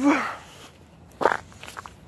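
A person's footsteps while walking, faint and irregular, with a short, louder scuff or breath-like sound a little over a second in.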